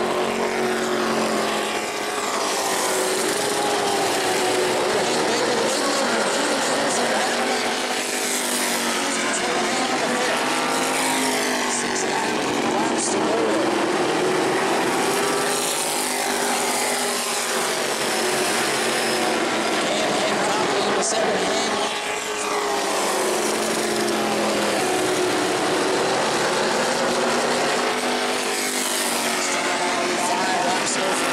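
A pack of E-Mod (modified) race cars running at speed on an asphalt oval, their engines rising and falling in pitch as they pass through the corners and down the straight.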